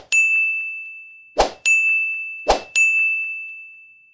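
Added sound effects for an on-screen subscribe/like/share button animation: three times, a sharp click followed by a bright ringing ding that fades away. The repeats come about a second and a half apart, then a second apart.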